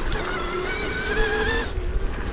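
Throne Srpnt 72-volt electric dirt bike's motor whining under throttle, its pitch climbing slowly before it stops near the end, over a steady low rumble from the ride.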